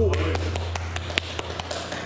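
Scattered light taps, several a second and irregular, with one sharper click about a second in, over a low hum that fades out.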